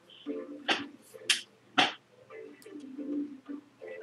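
Faint, muffled voices, with three short, sharp sounds between about two-thirds of a second and two seconds in.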